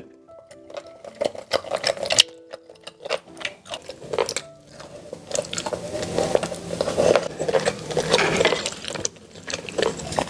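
Close-miked mouth sounds of a person biting and chewing soy-sauce-braised pork belly: many short, irregular wet clicks, busiest in the second half. Quiet background music runs underneath.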